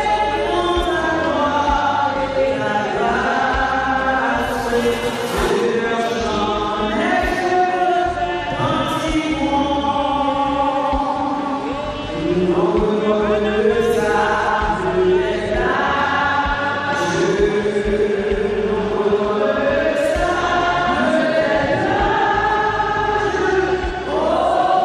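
A choir singing a slow hymn, many voices together holding long notes.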